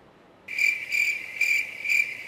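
Cricket chirping: a steady high trill that pulses about twice a second, starting abruptly about half a second in.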